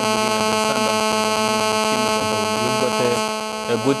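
Steady electrical buzz, a stack of many evenly spaced tones, carried on a faulty studio microphone's audio feed.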